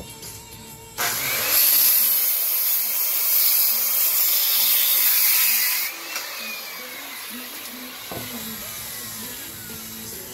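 Handheld circular saw cutting through a wooden deck board: a loud cut starting about a second in and lasting about five seconds, after which the blade coasts down with a slowly falling whine.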